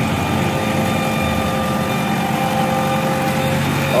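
JCB 3DX backhoe loader's diesel engine idling steadily.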